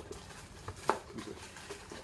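Light handling noise as a hand rummages in an open cardboard box, with a few small clicks and one sharp click just before the middle.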